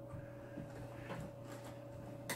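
Faint steady electrical hum with a few soft, quiet knocks and rustles of handling.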